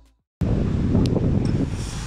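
Wind buffeting the phone's microphone, a dense, steady low noise that cuts in abruptly just under half a second in, after the last of a music passage has faded to silence.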